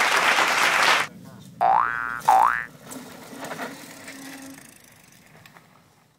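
Cartoon 'boing' sound effect played twice, each a springy tone gliding upward for about half a second. Before it, about a second of loud rushing noise that cuts off abruptly.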